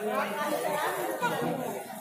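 Speech only: people talking.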